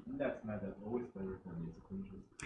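A student's voice asking a question from the audience, faint and distant because it is off-microphone.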